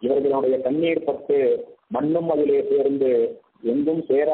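A man's voice speaking in phrases of about a second and a half with short breaks between them, the sound dull and cut off above about 4 kHz.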